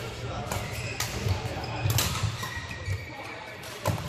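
Badminton rally: several sharp racket strikes on a shuttlecock, roughly a second apart, with short sneaker squeaks on the court floor between them.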